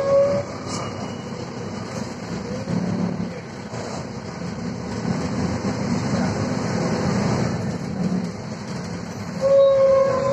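Interior of a 2000 Volvo 7000A articulated city bus under way: the engine and running gear give a steady low rumble that swells and eases slightly. Near the end a steady electronic tone sounds for about a second.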